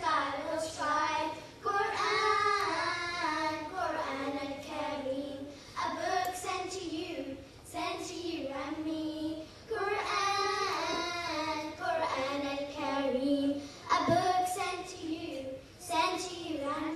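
A group of children singing a nasheed together, in sung phrases of a second or two with short breaks between them.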